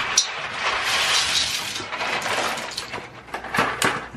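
Dry macaroni poured from a cardboard box into a stainless steel pot of water: a steady rattling hiss of pasta pieces for about three seconds, with a few sharp clicks near the end.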